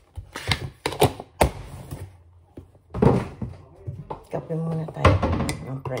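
A plastic creamer tub and a mug being handled on a kitchen counter: several sharp knocks and clicks, the loudest about a second and a half in.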